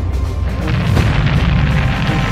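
Cartoon crash sound effects: a loud, continuous low rumble with crackles, over dramatic action music.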